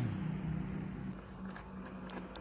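A few faint, short metallic clicks in the second half as an 8 mm socket tool loosens a bolt on a motorcycle seat-lock latch bracket, over a low steady background hum.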